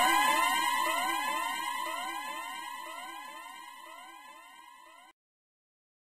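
Electronic siren sound effect: a fast-repeating up-and-down wail, about four sweeps a second, fading steadily away and then cutting off about five seconds in.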